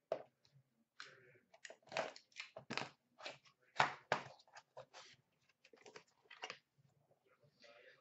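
A small white cardboard card box being opened by hand: a quiet, irregular run of short crackles, scrapes and clicks as the flap is worked open and the contents handled.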